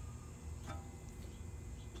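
Faint low hum of shop room tone, with a faint brief sound about two-thirds of a second in.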